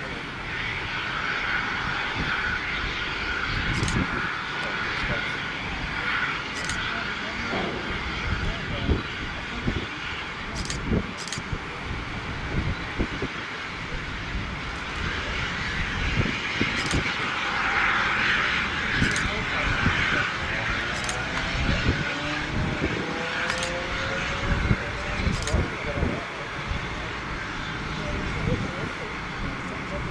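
Jet aircraft engines running steadily, swelling about two-thirds of the way through, with a few sharp clicks and indistinct voices nearby.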